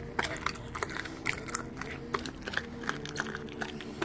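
A dog chewing raw chicken and crunching the bones: a run of irregular sharp cracks and chewing sounds.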